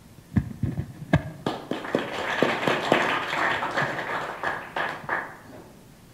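Small audience applauding: a few scattered claps, then a burst of many overlapping claps that dies away about five seconds in.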